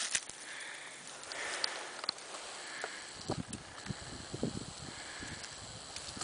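Dog sniffing at the ground in dry leaves: soft repeated sniffs, with short crackles of dry leaves being disturbed in the middle of the stretch.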